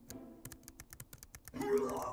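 Rapid typing on a computer keyboard: a quick run of key clicks. Near the end a brief vocal sound overlaps the clicks and is the loudest part.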